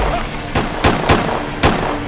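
Four gunshots, irregularly spaced, over a music track.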